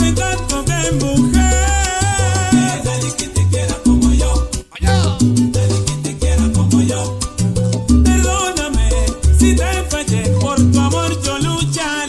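Salsa music played loud over a sonidero sound system, with heavy bass notes, steady percussion and melodic lines. There is a brief break in the music a little before halfway.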